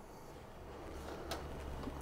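Quiet room tone: a low, steady hum with one faint click a little past halfway.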